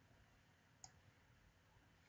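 Near silence with a single faint computer mouse click a little under a second in.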